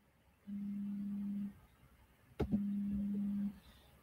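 Two low, steady buzzing tones, each about a second long and a second apart, with a short click just before the second one.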